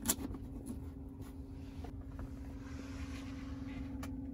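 A sharp click right at the start, then a few faint taps, as a hand handles a small aluminium SSD enclosure and its USB cable in a car's console storage bin. A steady low hum runs underneath.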